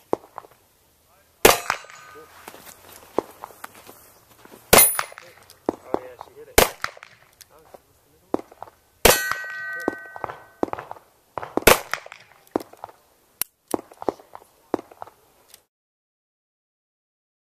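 Handgun shots fired one at a time, a second or two apart, at steel plate targets; several hits leave the steel ringing with a clear metallic tone for about a second.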